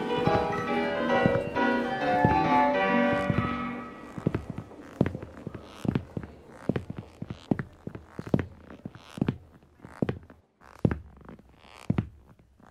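Music fading out over the first four seconds, then a run of sharp, irregular knocks about one to two a second: boot footsteps on a wooden plank floor.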